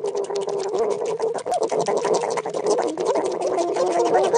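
Two guinea pigs chewing a shared leaf: a fast, steady crackle of small clicks over a held, slightly wavering tone.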